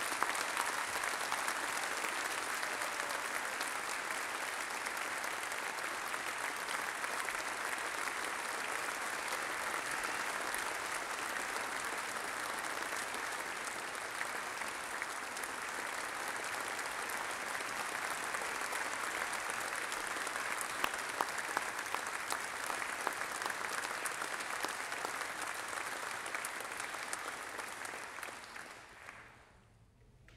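A large audience applauding steadily for nearly half a minute, the clapping thinning and dying away near the end.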